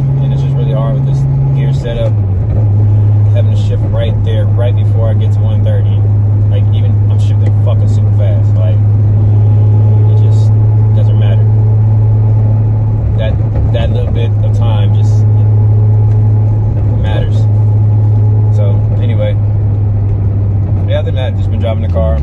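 Car engine and exhaust drone heard inside the cabin while driving: a strong steady low hum that drops in pitch about two seconds in, then holds even as the car cruises. A man's voice talks over it.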